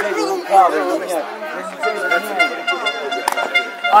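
Football spectators talking and calling out, with a steady held tone joining in about two seconds in.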